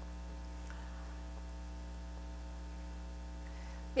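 Steady electrical mains hum with a ladder of faint overtones and no other distinct sound.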